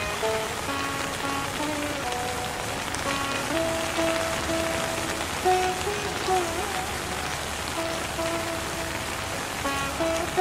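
Steady rain falling on water, with a slow Indian instrumental melody over it: long held notes that now and then slide in pitch.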